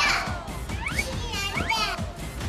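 A baby babbling and squealing over light background music.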